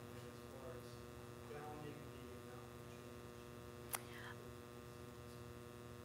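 Steady electrical mains hum from the room's sound system, with a faint distant voice speaking off-microphone and a single sharp click about four seconds in.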